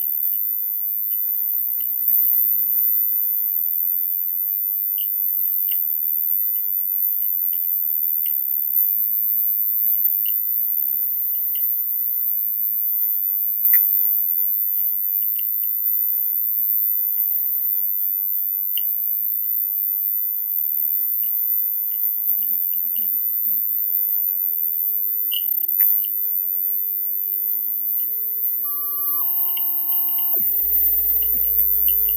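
Minimal electronic ambient music: a very high, steady pure tone and a lower steady tone are held, dotted with short, irregular blips and clicks. A faint low melody, moving in small steps, comes in about two-thirds of the way through.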